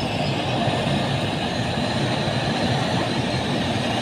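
Sugar mill machinery running, a steady and even mechanical din with no breaks.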